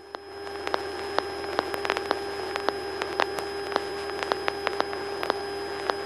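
Light aircraft's intercom audio feed in flight with no one talking: a steady electrical hum with a thin tone over hiss, broken by irregular crackling clicks several times a second.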